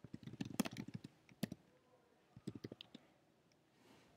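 Computer keyboard typing: a quick run of keystrokes through the first second, a single one about a second and a half in, and a short burst around two and a half seconds in.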